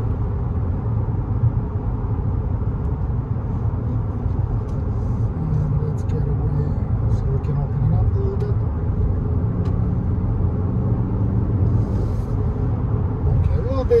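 Cabin noise of a 2022 Infiniti QX50 cruising at freeway speed: a steady low rumble of tyres, road and its turbocharged four-cylinder engine, heard from inside the car.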